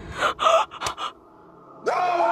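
Several sharp, breathy gasps of shocked onlookers in quick succession in the first second. Near the end a pitched tone rises and holds.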